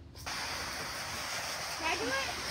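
Water spraying from a garden hose's spray nozzle, switched on suddenly just after the start and then running as a steady hiss.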